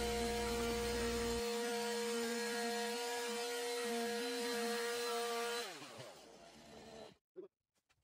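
Stihl MS 180 two-stroke chainsaw driving a belt-drive carving wheel into a wooden tabletop, running at a steady high pitch. About six seconds in the throttle is released and the engine winds down, falling in pitch.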